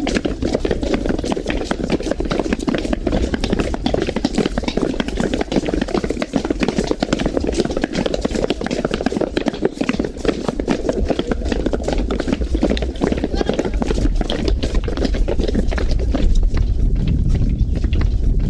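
A crowd walking along a paved street: many footsteps overlapping irregularly, with the walkers' voices mixed in.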